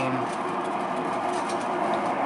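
Electric potter's wheel running steadily while wet hands press into the spinning ball of clay to open it, with a few faint wet clicks.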